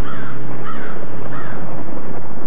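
A crow cawing three times, each a short harsh call, over a low sustained musical drone.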